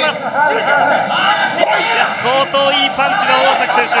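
Men's voices talking over one another, with crowd noise from the arena beneath.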